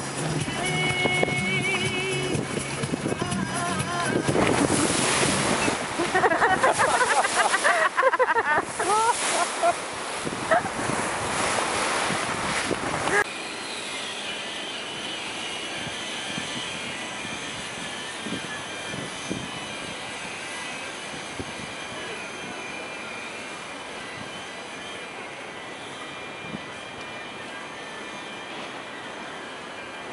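Wind on the microphone and water rushing in a sailing yacht's wake, loud and gusty. About 13 s in it drops suddenly to a much quieter, steady background hum.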